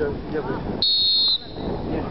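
A referee's whistle blown once, a short, steady, high-pitched blast of about half a second, signalling the kick to be taken.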